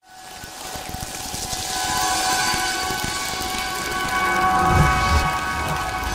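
A channel promo's produced sound bed: a hissing wash with a held synth chord that swells in after a moment of silence and holds steady.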